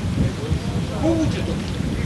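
Water sloshing and splashing around a man's waders as he wades through shallow muddy water, over a steady low rumble, with faint voices about a second in.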